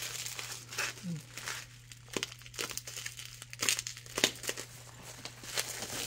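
Plastic bubble wrap crinkling and crackling as it is handled and pulled off a boxed knife, with a few sharper crackles at irregular moments. A steady low hum sits underneath.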